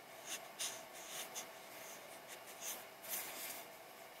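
Faint, brief scratchy rustles, about eight of them at uneven intervals.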